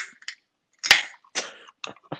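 A man coughing in four or five short bursts, about half a second apart.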